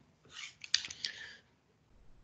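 A soft hiss with a few faint, sharp clicks, clustered between about half a second and a second and a half in.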